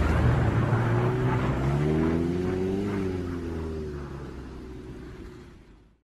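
Car engine revving up and then easing off, its sound fading out to silence near the end.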